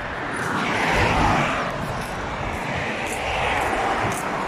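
Road traffic on a roadside highway: the tyre and engine noise of passing cars, swelling about a second in and again near three seconds.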